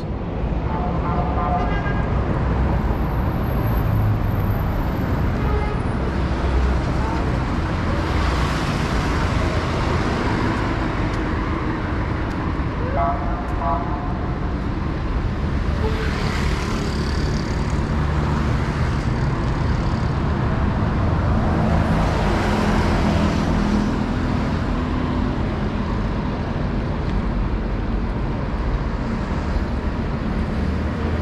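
Steady road traffic on a wide city avenue: a continuous rumble of cars and buses, with passing vehicles swelling up and fading several times.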